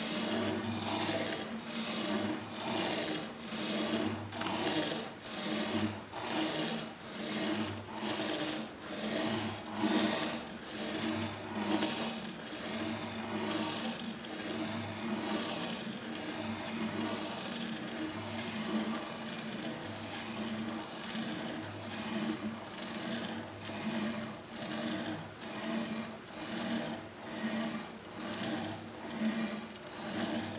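Felt-tip pen of a pendulum harmonograph dragging across paper, a scratchy swish that swells and fades about twice a second with the swing of the pendulums, over a faint steady low hum.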